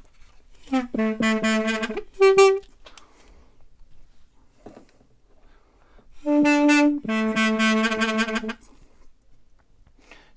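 Mey, the Turkish double-reed wind instrument, here one in A (la karar), playing two short phrases of sustained low notes with a pause of a few seconds between them. The first phrase ends on a brief higher note; the second rises a step and then settles back on the low note.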